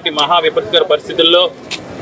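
Speech: a voice talking for about a second and a half, then a short pause.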